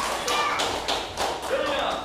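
Irregular run of sharp taps and knocks over voices in a large room.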